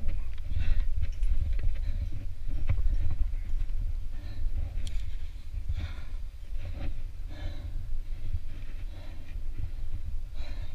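A rock climber breathing hard under effort, with short exhales every second or two, over a steady low rumble on a head-mounted camera microphone.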